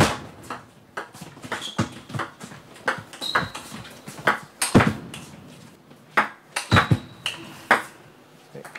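Table tennis rally: the ball is struck by bats and bounces on the table in a quick, irregular series of sharp clicks.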